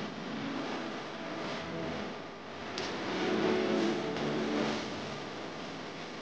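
A woman singing long held notes over a loud, hissy backing, loudest in the middle.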